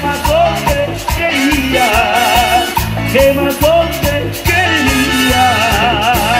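Latin dance band playing an instrumental passage of the song: a steady, repeating bass-and-drum beat under a wavering lead melody.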